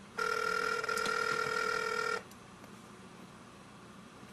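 Telephone ringback tone heard over the phone line as a call is placed: one steady ring about two seconds long that starts just after the beginning and cuts off sharply.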